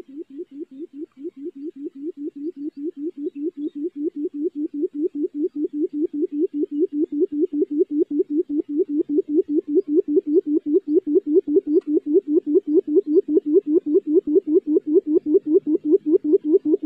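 A quail's call: a long, even run of low hoots, about five a second, growing steadily louder.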